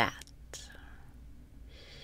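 A woman's soft inhale, a quiet breathy hiss that begins near the end, just after a spoken word.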